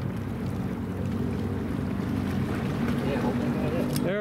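A motor drones steadily and low throughout, over a haze of wind noise.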